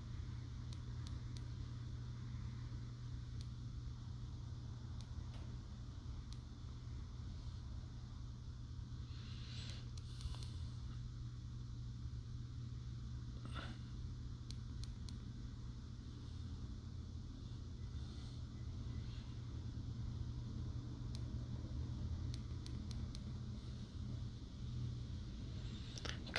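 Faint, scattered clicks of a Bluetooth earphone's inline remote buttons being pressed repeatedly, over a steady low hum of room tone.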